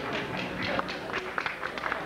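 Audience applauding: a dense patter of many hands clapping.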